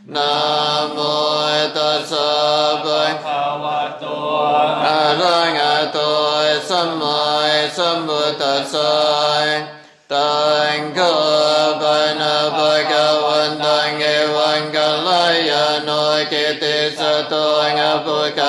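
Buddhist chanting in Pali, recited on a near-monotone in long held syllables with slow pitch glides, broken by a short pause for breath about ten seconds in.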